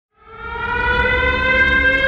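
A sustained, siren-like tone swelling in from silence within the first half second, its pitch creeping slowly upward, over a steady low rumble.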